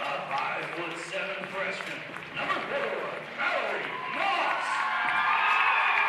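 A public-address announcer's voice echoing through a gymnasium, calling the starting lineups. The crowd noise grows louder in the last couple of seconds.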